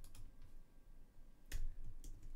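A few faint clicks of computer input, then one sharper click with a dull thud about one and a half seconds in, over quiet room tone.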